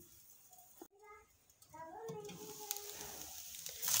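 Minced beef sizzling faintly under a glass lid over reduced heat, starting about a second and a half in after a near-silent start. Faint high pitched calls sound in the background twice, a short one about a second in and a longer one a second later.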